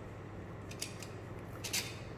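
A couple of faint metallic clicks and scrapes, about a second in and again near the end, as a transducer holder is slid along the stainless rail of an ultrasonic clamp-on flowmeter. A steady low hum runs underneath.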